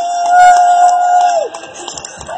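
A spectator's loud, high "woo" cheer close by, held on one pitch for about a second and a half, sliding up at the start and dropping away at the end, over crowd noise.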